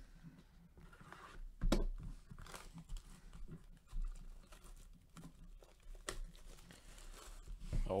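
Plastic shrink-wrap on a sealed hobby card box being torn and crinkled by gloved hands: scattered crackles, with a sharper snap nearly two seconds in.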